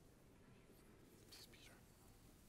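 Near silence: faint room tone, with a brief whispered word or two a little past halfway, the soft hiss of the whisper standing out above the quiet.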